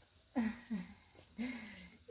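A person's voice: three short murmured utterances with quiet gaps between them.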